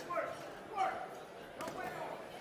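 Shouted voices in a boxing arena, with a couple of dull thuds near the end, typical of gloved punches landing during an exchange.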